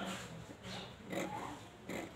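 Scissors cutting through cotton cloth on a tabletop, about four snips a little over half a second apart.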